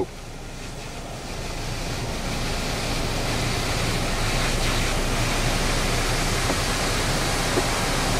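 Electric panoramic-roof sunshade of a Nissan Qashqai closing: a steady motorised hissing whir that builds over the first couple of seconds and then holds level.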